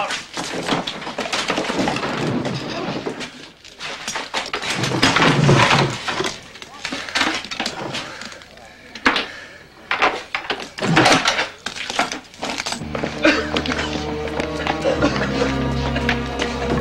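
Film soundtrack of a fight scene: a run of sharp knocks and crashes mixed with wordless vocal sounds. Background music with held low notes comes in about thirteen seconds in.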